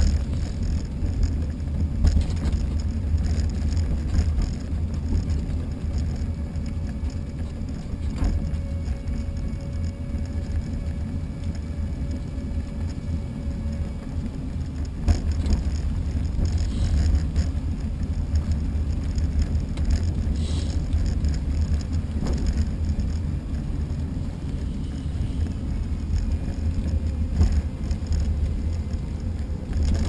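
Steady low rumble of wheels rolling over pavement with wind on the microphone, broken by a few brief knocks and a faint thin whine for several seconds.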